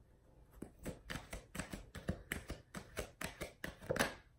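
A deck of oracle cards being shuffled by hand: a quick run of light card slaps and clicks, several a second, starting about half a second in.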